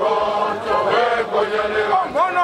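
A large group of men chanting in unison, voices held on long notes.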